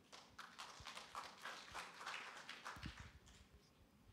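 Faint footsteps, a person walking away at a few steps a second, fading out near the end.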